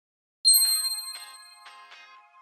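A bright chime struck once about half a second in, ringing out and slowly fading, with soft notes sounding about every half second beneath it like the start of a gentle music intro.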